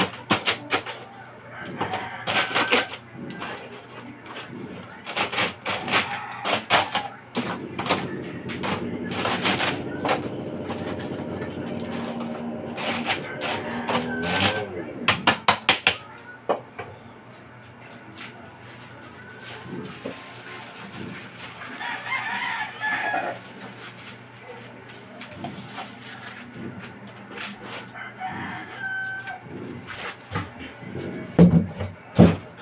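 A metal rod stabbing and chipping ice packed around the canister of a traditional ice cream tub. It makes a rapid run of sharp clinks and crunches for about the first half, then sparser knocks. A rooster crows in the background about 22 seconds in.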